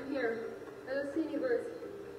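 A woman speaking: television dialogue played back in the room.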